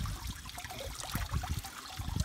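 Water trickling and lightly splashing in a small fountain basin used for washing feet.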